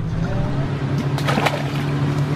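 Boat's outboard motor idling with a steady low hum, with faint voices and a short burst of noise just past a second in.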